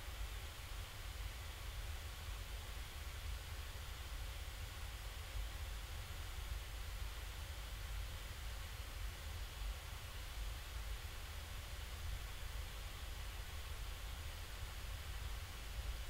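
Steady room tone: a low hum under a faint, even hiss, with no other sound.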